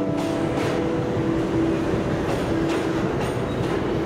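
New York City subway train running past the platform: a steady rushing noise with irregular clacks of the wheels over the rail joints.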